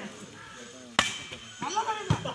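A volleyball struck by a player's hand: one sharp slap about a second in, followed by players shouting.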